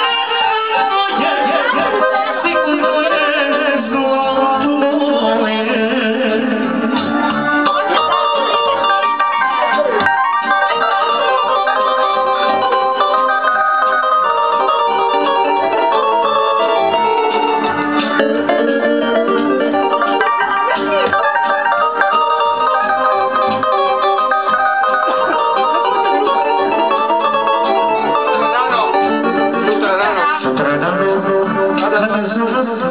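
Loud, steady amplified live band music, with a chromatic button accordion and an electronic keyboard playing.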